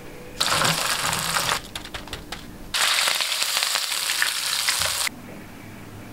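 Food sizzling in a hot frying pan, heard in two stretches of about one and two seconds, each starting and stopping abruptly.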